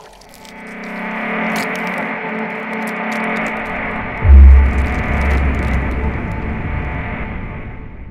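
Music for an animated logo intro: a dense musical swell builds for about four seconds, then a deep bass hit lands, the loudest moment, and the sound slowly fades away.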